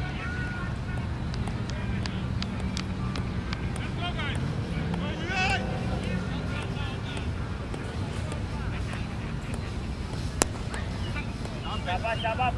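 Open-air ambience at a park cricket ground: a steady low rumble of wind and distant traffic, with faint far-off voices and chirps. A single sharp knock stands out about ten seconds in.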